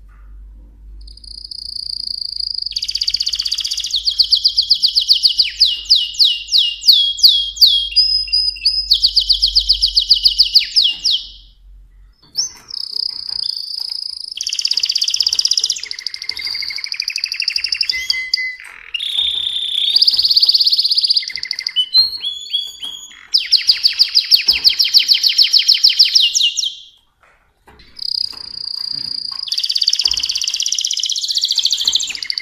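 Mosaic canary singing: long phrases of fast, high trills and rolling notes. The song breaks off briefly about twelve seconds in and again near twenty-seven seconds, then resumes.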